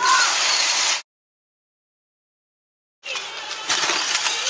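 Steady outdoor background hiss that drops out completely for about two seconds in the middle, then comes back. The dead silence is an edit gap between two clips.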